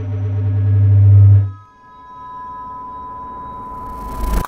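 Electronic logo-intro sound design: a deep synthesized drone swells louder and cuts off about a second and a half in. A steady high-pitched electronic tone, like a test-tone beep, then holds to the end.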